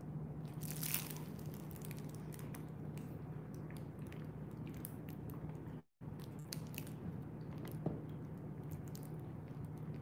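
Bernese mountain dog chewing on a green chew toy: irregular soft clicks and crunches of teeth working the toy, over a steady low hum. The sound drops out for an instant about six seconds in.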